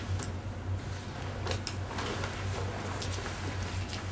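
Quiet room tone with a steady low hum and a few faint, scattered clicks and rustles.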